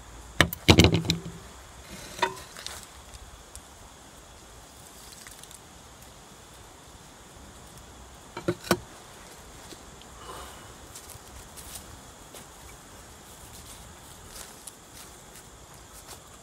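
A few sharp clinks and knocks of glass lab beakers being handled and set down: a loud cluster about half a second to a second in, a lighter one near two seconds, and a double knock about eight and a half seconds in. Faint background sound fills the gaps.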